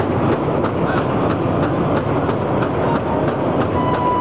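A powwow drum group beating a large shared drum in unison, a steady beat of about three strokes a second.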